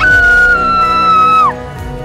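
A high-pitched scream, loud and held steady for about a second and a half, then breaking off with a drop in pitch, over background music.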